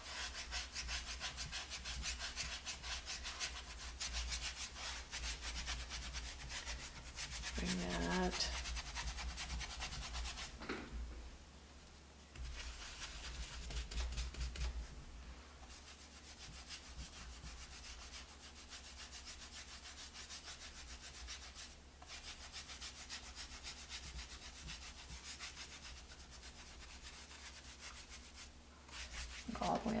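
Paintbrush bristles scrubbing paint onto a wooden board in rapid short strokes with light pressure, pausing briefly twice.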